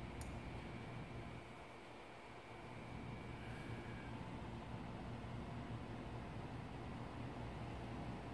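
Quiet room tone: a steady low hum under faint background hiss, with one tiny click just after the start.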